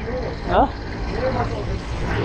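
A person's voice in short snatches over the steady low rumble of a motorcycle on the move, with wind noise.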